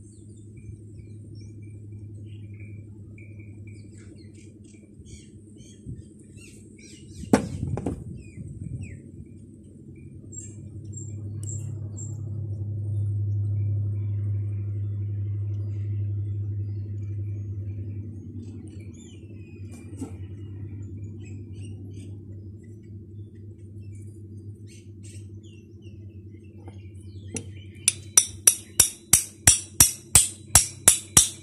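A steady low hum with faint clicks of metal parts being handled. Near the end a small hammer taps a metal part in a quick regular run, about three strikes a second.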